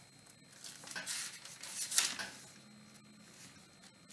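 Soft rustling of paper being handled, like book pages being turned, in a few brief rustles with the loudest about two seconds in.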